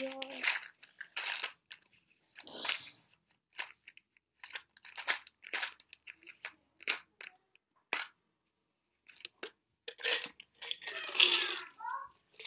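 A small plastic coin jar being opened and handled: a string of short clicks, crinkles and knocks, then a denser rattle of coins shifting inside it near the end.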